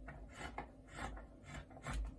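Faint, irregular rubbing and scraping of polar fleece fabric being handled and smoothed on a table.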